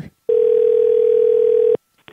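Telephone ringback tone heard over a phone line: one steady ring lasting about a second and a half that then stops, with the call picked up just after.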